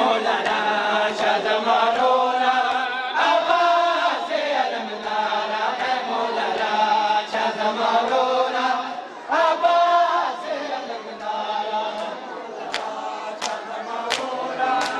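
A group of mourners chanting a noha together in long, rising and falling phrases. Near the end, sharp slaps come about every two-thirds of a second, the beat of matam chest-beating.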